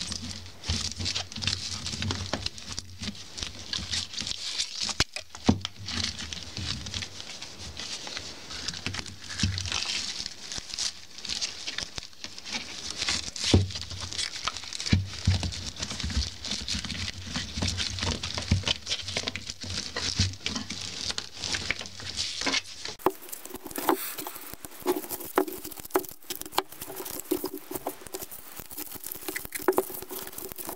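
Stiff polypropylene broom bristles rustling and crackling under gloved hands as copper wire is threaded and pulled tight around them, with a dense run of small clicks and scratches. A low background hum stops about two-thirds of the way through.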